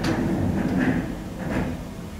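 Steady low room rumble with a sharp click at the start and a fainter knock about one and a half seconds in.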